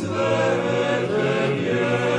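Choral music: a choir of voices singing slow, long-held chords.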